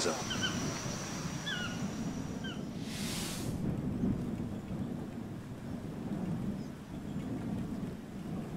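Low, steady outdoor rumble, with a few short, high chirps in the first couple of seconds and a brief hiss about three seconds in.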